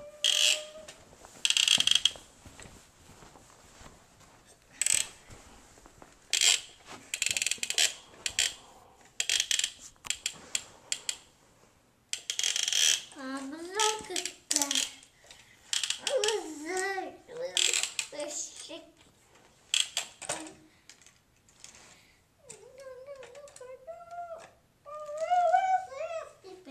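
Toy trains and track pieces being handled: scattered clicks and short clattering rattles of small toy engines and cars knocking against the track. A child hums and makes wordless sing-song vocal sounds now and then, mostly in the second half.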